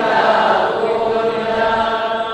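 A group of voices chanting Vedic mantras in long held tones.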